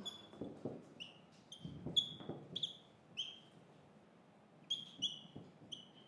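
Dry-erase marker squeaking on a whiteboard as an equation is written: a string of short, high squeaks with a lull midway.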